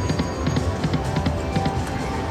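88 Fortunes video slot machine spinning its reels: a quick run of clicks as the reels spin and stop, over the machine's music and a steady low hum.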